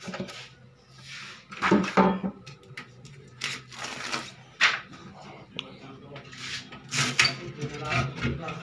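Boards and a screen-printing frame being lifted and handled on an exposure table: a string of knocks, clatters and scrapes, loudest about two seconds in and again near the end.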